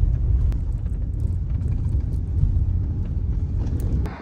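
Low, steady rumble of a car driving, its road and engine noise heard from inside the cabin, with a few faint knocks.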